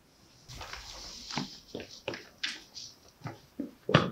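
A person's faint, short breathy vocal sounds, about three a second, starting half a second in.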